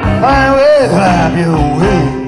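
Live blues-rock band playing over a steady beat and bass, with a lead line bending up and down in pitch.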